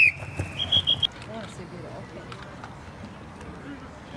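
Referee's whistle blown to end the play: one long blast that fades out, overlapped about half a second in by four quick, slightly higher blasts from a second whistle. After that there is the murmur of distant voices from the sideline and crowd.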